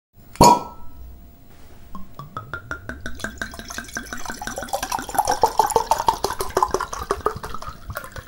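A glass clinks once with a short ring, then wine glugs and splashes as it is poured from a bottle, getting louder partway through.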